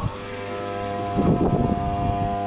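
Greater Anglia electric multiple unit starting to pull away: its traction motors give a steady whine of several tones that grows louder, over a low hum. A brief rustle of noise comes about a second in.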